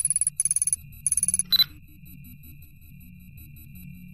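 Electronic background music with a low pulsing bass line, overlaid with three short bursts of rapid high-pitched electronic beeps in the first second and a half and then a single brief blip, like data-readout sound effects.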